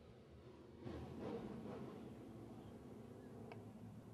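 Faint, distant drone of the Limited Late Model race cars running slowly on the dirt oval before the start, a little louder about a second in.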